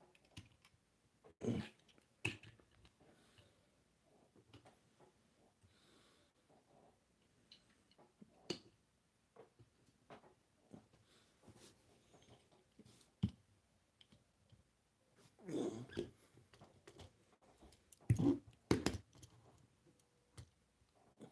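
Scattered light clicks and taps of small die-cast toy engines being picked up and set down in a row by hand. Twice, in the second half, come short low vocal sounds, not words.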